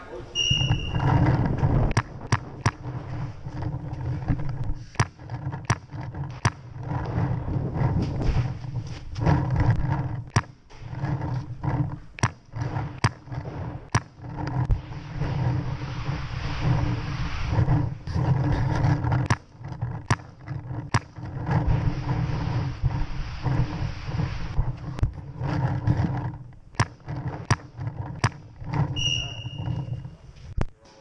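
Paintball markers firing in irregular strings, with balls smacking against inflatable bunkers, over a loud, uneven rumble in a large indoor hall. A short high beep sounds just after the start and again near the end.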